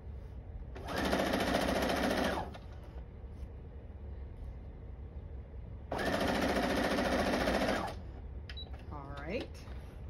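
Domestic electric sewing machine stitching in two bursts, the first about a second and a half long and the second about two seconds, with a pause between them.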